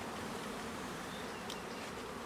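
Steady buzzing of a mass of Russian honey bees being shaken from a package box into a hive. The colony is fanning, which is taken as a sign that the bees have found their new home.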